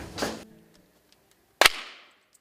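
A short swish that fades quickly, then, about a second and a half in, a single loud, sharp crack with a brief ringing tail.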